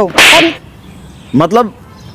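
A single loud whip-like crack, lasting about a third of a second, as a hand smacks a woman's backside. A short vocal sound follows about a second later.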